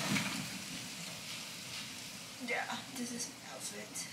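Quiet room with a steady faint hiss, a sharp click right at the start, and a woman's voice murmuring faintly in the second half.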